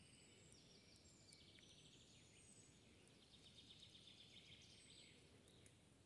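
Faint songbird song: high, rapid trills, one phrase in the first half and a clearer one from about three and a half to five seconds in.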